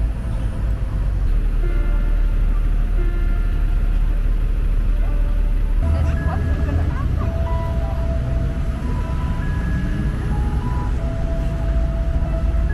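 Musical swings sounding short held notes at different pitches, one after another as they are swung, over a steady low rumble.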